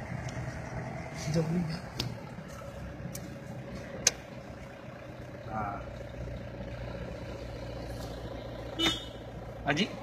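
A vehicle's engine running steadily at low revs, heard from inside the cabin, with a few sharp clicks.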